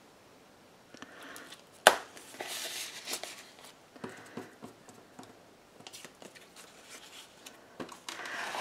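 Cardstock pages of a handmade scrapbook mini album being turned and handled: a soft paper rustle with light scrapes and small ticks, and one sharp tap about two seconds in.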